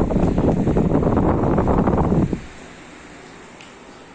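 Loud wind buffeting the microphone outdoors, a dense low noise that cuts off abruptly about two seconds in, leaving a much quieter steady background noise.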